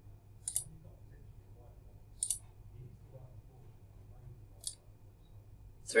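Three short computer mouse clicks, about two seconds apart, over a faint low hum.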